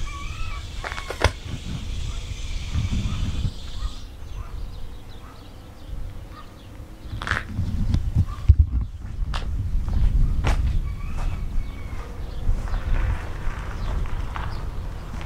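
Wind rumbling on a handheld camera's microphone, with scattered footsteps and handling knocks as the camera-holder walks. A steady hiss runs through the first four seconds.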